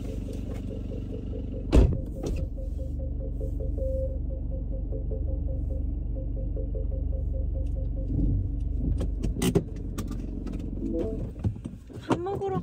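Car interior with the engine running in a steady low rumble. A regular ticking runs over it for about eight seconds, and there is a sharp knock about two seconds in. Several clicks come near the end.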